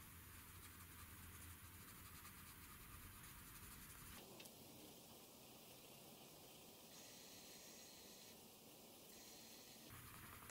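Near silence with the faint, steady scratch of a coloured pencil shading on paper.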